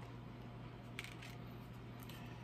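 Tarot cards being handled over a low steady hum, with a single soft click of a card about a second in.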